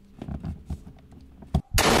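Faint clicks and handling noise, then near the end a sudden, very loud explosion blast cuts in.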